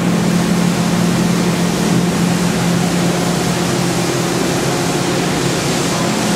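Steady low hum under an even airy hiss from a running Makino V22 vertical machining center and its auxiliary cooling and air-handling units.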